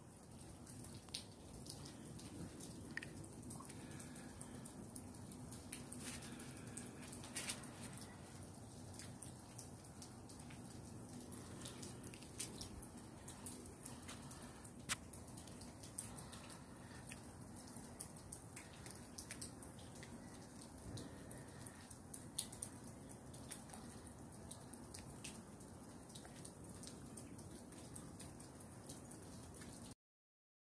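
Wet snow and sleet falling outdoors, heard as scattered sharp ticks and drips over a faint, steady low background rumble.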